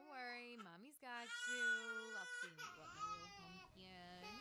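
Crying in a series of drawn-out, wavering wails, the longest beginning about a second in and lasting over a second.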